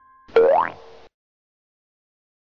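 Cartoon transformation sound effect: a short boing-like sound rising quickly in pitch over about half a second, starting about a third of a second in, over a held lower tone that stops abruptly at about one second. It marks a character's sudden magical change into a little girl.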